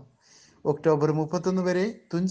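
A man narrating in Malayalam. The speech starts again after a pause of about half a second.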